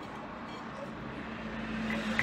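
Steady background noise with a faint low hum and no distinct knocks or clicks.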